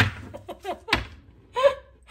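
A woman laughing in short, broken bursts with catching breaths between them.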